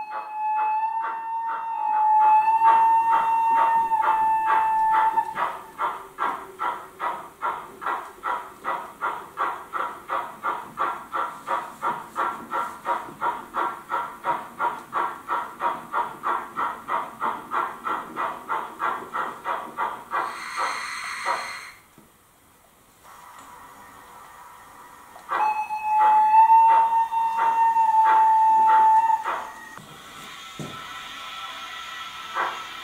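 H0 model steam locomotive's sound decoder: a steady whistle for about five seconds, then rhythmic steam chuffs at about three beats a second as the engine runs. A short hiss comes about two-thirds of the way through, then a brief lull, and the whistle sounds again near the end over a few chuffs.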